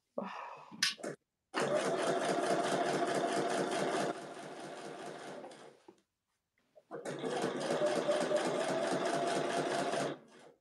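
Domestic electric sewing machine stitching through vinyl bag panels in two runs: a steady motor hum with rapid needle strokes. It stops for about a second near the middle, then runs again.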